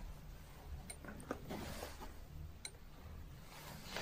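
Quiet room with a low steady hum and a few faint clicks, about a second in and again near three seconds.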